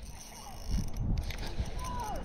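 Spinning reel being wound in against a hooked fish, heard as low, rough rumbling and knocking of rod-and-reel handling that builds from about half a second in.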